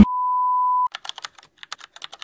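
A steady test-tone beep over TV colour bars that cuts off just under a second in, followed by a run of quick keyboard-typing clicks, a typing sound effect as a title is typed out on screen.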